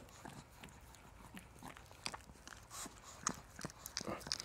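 A small dog licking a person's face close to the microphone: irregular wet licks and tongue smacks, a few each second, the sharpest near the end.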